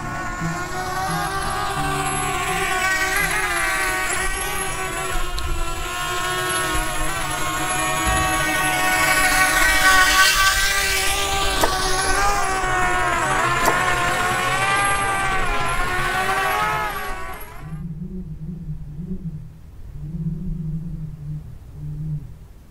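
Small propeller aeroplane droning as it flies past, the sound building to its loudest about halfway through and its pitch wavering as it passes. It cuts off suddenly about three-quarters of the way in, leaving only faint low tones.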